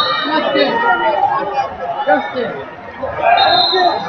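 Many people talking at once in a large hall. Near the end a man laughs and begins an announcement.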